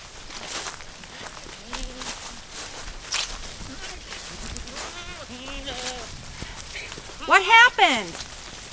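Footsteps through dry pasture grass, with goats bleating: a few faint wavering bleats, then one loud quavering bleat close by near the end.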